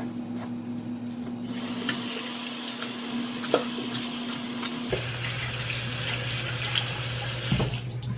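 Bathroom sink tap running, the water starting about a second and a half in and running steadily, with a couple of light knocks and a steady low hum underneath.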